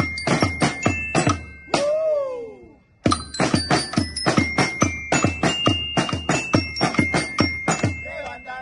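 A group of marching snare drums struck with sticks in a fast, even beat, with a high melody line of held notes over them. About two seconds in the drumming breaks off under a falling pitched glide, goes almost silent, and restarts about three seconds in.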